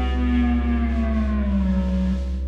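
Live blues-rock band holding a sustained note over a steady low bass, the pitch gliding down about a second in as the song winds to its end.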